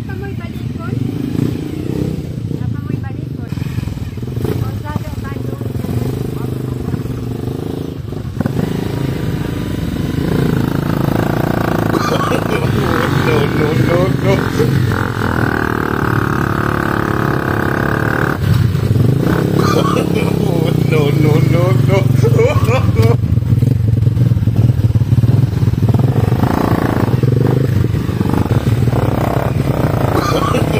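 A heavily loaded dirt motorcycle's engine running at low revs as it is eased over a rocky track. It gets louder about ten seconds in and again near twenty seconds. People's voices are heard over it.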